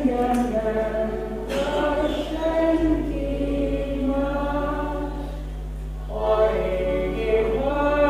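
A man singing a folk song in phrases, accompanied by a diatonic button accordion.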